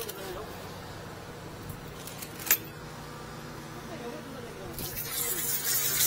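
Steady low machine hum with a single sharp click about two and a half seconds in; near the end the hiss of a high-pressure drain-jetting nozzle spraying water starts and builds.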